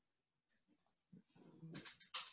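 Near silence on a video-call line, with a few faint soft sounds near the end.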